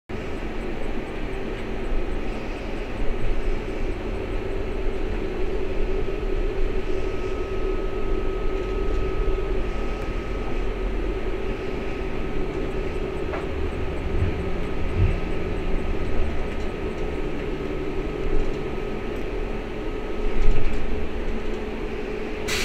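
Cabin noise of an Ikarus 412 trolleybus under way: a steady electric hum and whine with road rumble, a few low knocks, and a swell in loudness near the end.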